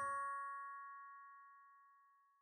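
A bell-like chime, several notes sounding together, ringing out and fading away over about a second and a half: the closing note of a music sting.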